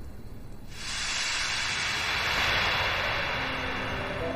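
A film sound effect: a hiss sets in suddenly under a second in, swells and then fades, serving as a scene-transition effect. Soft sustained music notes come in near the end.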